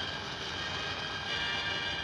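Steady drone of a B-29 Superfortress's four radial piston engines running, a dense even noise with a faint high whine held over it.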